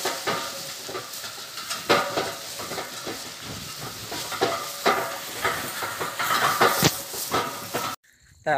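Bullock cart loaded with cut napier grass moving along a dirt track: a steady rattling, rustling noise with frequent irregular knocks and clatters.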